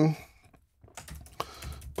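Typing on a computer keyboard: a run of separate key clicks starting about a second in, after a brief near-quiet pause.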